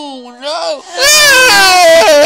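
A cat yowling close by: long, drawn-out, loud calls that bend in pitch, a short one about halfway and a long one starting about a second in.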